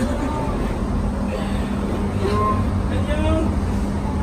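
Scattered voices over a steady low rumble with a constant hum.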